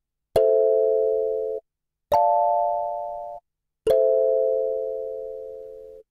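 A kalimba sample played back through an Ableton Move's melodic sampler, triggered from its pads as three plucked chords about two seconds apart. Each chord rings and fades, and the first two are cut off abruptly. The second chord is pitched higher, and the third rings on to the end.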